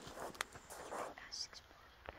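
Whispered speech, breathy and hushed, with a faint click.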